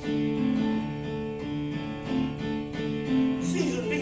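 Instrumental break in a folk ballad: held keyboard chords that change every half second or so, with the singer's voice coming back in near the end.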